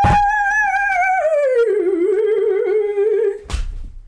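A woman's voice holds one long, slightly wavering sung note, slides down to a lower note about a second in, and holds that until near the end. A thump follows at the end, with a knock at the very start.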